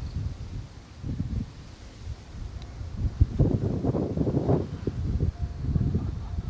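Wind buffeting the microphone in irregular gusts, growing louder in the second half.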